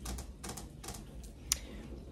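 Several light, irregular clicks and taps, the sharpest about one and a half seconds in, over a low steady hum.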